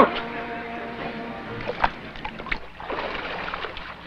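Swimming-pool water sloshing and splashing as a swimmer climbs out over the edge, with a few sharp splashes about two seconds in. A few held notes of background music sound in the first second or so.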